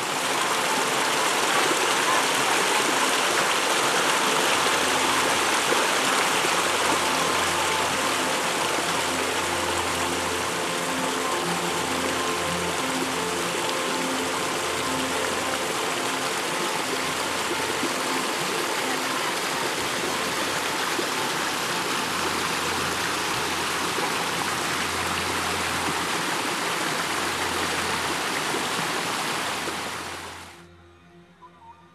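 Water rushing and splashing over rocks in a narrow, rock-lined manmade spawning channel, as a steady, full rush.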